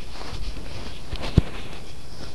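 Handheld camera handling noise: rustling on the microphone, with one sharp knock about one and a half seconds in.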